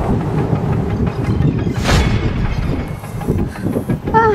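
Wind buffeting the microphone: an uneven low rumble, with a brief hiss about two seconds in.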